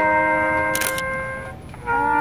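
Small brass band of trumpets, trombone and saxophone holding a sustained chord that fades away about one and a half seconds in, then the whole band comes back in together just before the end. A brief high hiss sounds near the middle of the held chord.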